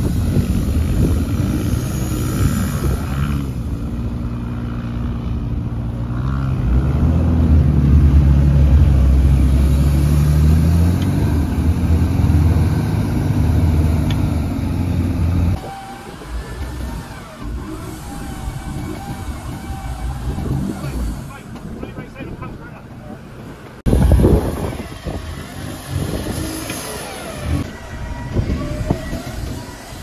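Mitsubishi Triton ute's engine revving hard while the ute is bogged in soft beach sand, its front wheel spinning and digging in. The engine note rises and falls for about fifteen seconds, then cuts off abruptly to a quieter stretch, with a short loud surge later on.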